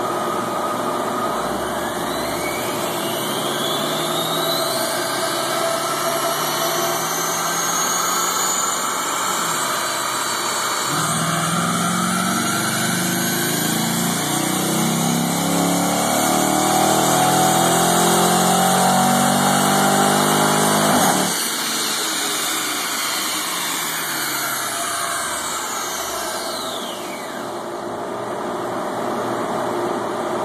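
Dodge Challenger SRT8's Hemi V8 making a full-throttle dyno pull on the rollers. After building speed for several seconds, the engine goes to full throttle about 11 seconds in and climbs steadily in pitch, getting louder, until it cuts off sharply about 21 seconds in as the throttle is lifted. The engine and rollers then wind down with falling pitch.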